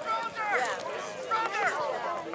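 High-pitched voices shouting across a soccer field, with two drawn-out calls, one about half a second in and one about a second and a half in.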